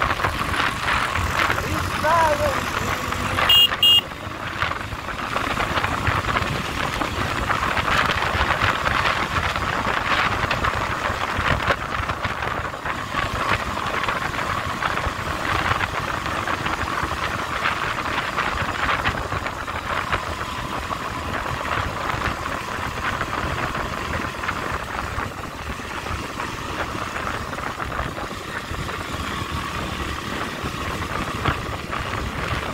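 Motorcycle engine running steadily while riding along a road, with two short loud beeps about three and a half seconds in.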